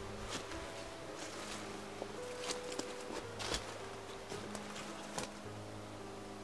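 Footsteps moving through dry undergrowth, with scattered crackles and snaps throughout, the loudest about two and a half, three and a half and five seconds in. A quiet sustained musical drone holds underneath.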